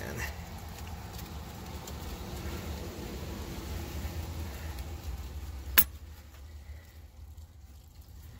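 Faint rustling and rubbing of paracord being worked by hand through the strands of a nylon rope, over a steady low rumble, with one sharp click about six seconds in.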